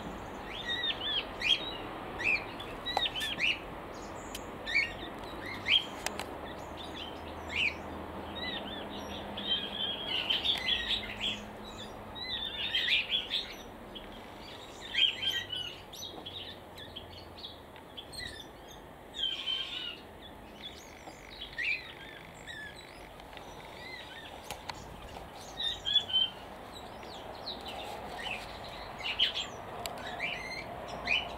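Button quail calling: many short, high chirps and peeps in irregular clusters.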